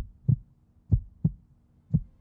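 Heartbeat sound effect: short, low double thumps, a lub-dub about once a second, over a faint steady low tone.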